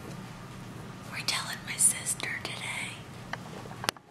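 A person whispering for a couple of seconds in the middle, over a steady low hum.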